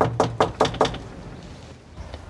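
Knocking on a front security screen door: a quick run of about five knocks that stops about a second in.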